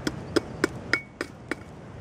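Side axe chopping into a seasoned birch log, trimming the mallet's handle: about six short, sharp strikes, roughly three a second, one of them leaving a brief ring.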